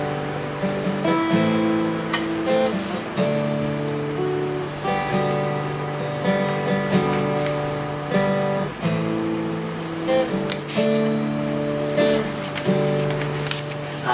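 Acoustic guitar strummed alone as a song's intro, the chords changing every second or two.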